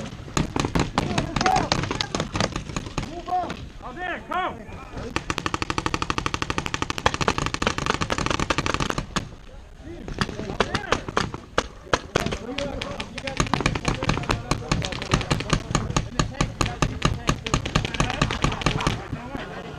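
Paintball markers firing throughout, with a fast, steady string of shots, several a second, lasting about four seconds midway, and scattered shots around it. Shouting voices are heard in the first few seconds.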